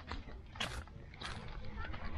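A dog walking on a gravel path, heard close up from a camera on its back: irregular short scuffs and breaths about every half second over a low rumble of camera movement.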